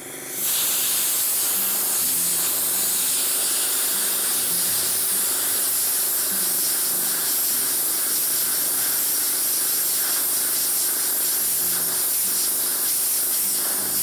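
Compressed air from a shop air compressor hissing steadily out of a narrow upward-pointing tube, starting about half a second in, with a screwdriver balanced and spinning in the jet.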